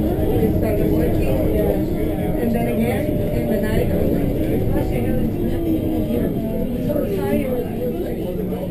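Indistinct chatter of passengers inside a moving bus, over the steady low rumble of the bus running along the road.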